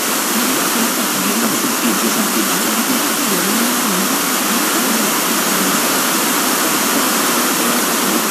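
Loud, steady FM static hiss from an SDR receiver tuned to a distant FM broadcast station whose signal has faded into the noise. Only faint wavering traces of the programme audio come through underneath.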